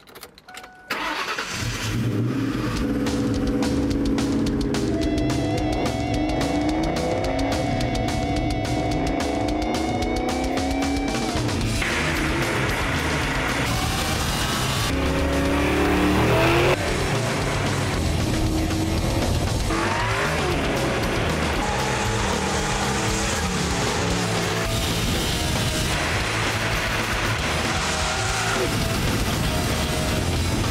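Supercharged Ford Mustang SVT Cobra V8 revving and accelerating hard, climbing in pitch through the gears, with rock music playing over it.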